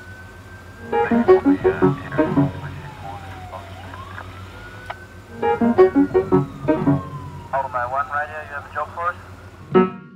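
A wailing siren rising and falling slowly, about one sweep every four seconds, with short bursts of voices over it and a steady low hum beneath.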